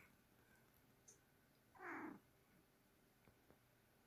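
A sleeping ginger cat gives one short, soft mew that falls in pitch, about halfway through; otherwise near silence.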